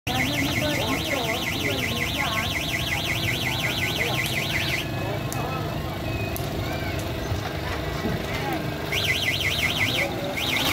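A rapidly warbling electronic alarm tone, like a car alarm, over crowd chatter; it stops about five seconds in and starts again near the end.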